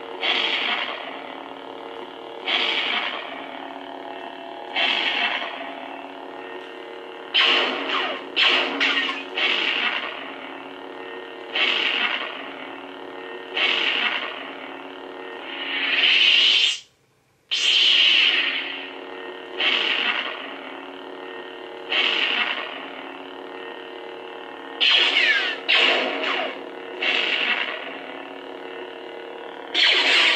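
Lightsaber prop's sound board playing its sound font through a small speaker: a steady electric hum with a louder swelling effect every second or two. The sound cuts out briefly about 17 seconds in and starts again as the blade relights.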